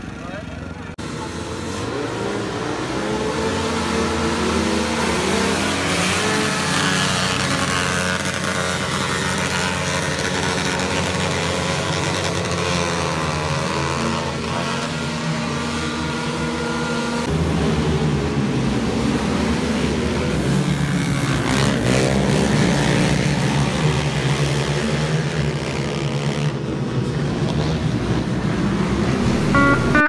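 A pack of small dirt-track racers running laps, their high-revving engines rising and falling in pitch as they go round. The sound builds over the first few seconds, then stays steady.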